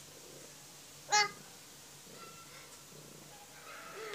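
A domestic cat's single short meow, about a second in.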